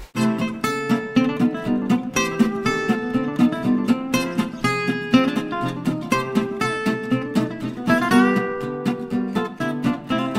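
Background music led by an acoustic guitar, a quick run of plucked and strummed notes.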